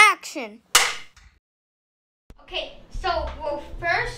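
Title-card sound effect: a quick falling whistle-like tone, then a single sharp clap of a clapperboard snapping shut, under a second in. Children's voices start near the end.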